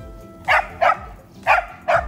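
A dog barking four times in two quick pairs, about a second apart.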